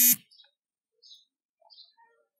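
Computer mouse clicking faintly a few times, short ticks about a second in and again near the end, against near silence.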